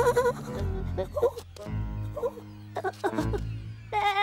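Background cartoon music with a few short, wavering lamb bleats about a second apart.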